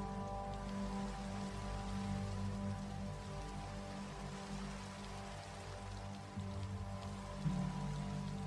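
Soft background music of held chords over a steady, rain-like hiss.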